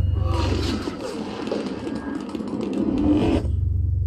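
Sound effects from a Dolby TrueHD demo trailer playing over a surround system: a deep bass rumble under a clatter of small bouncing impacts and whooshes. The higher sounds drop away about three and a half seconds in, leaving the rumble.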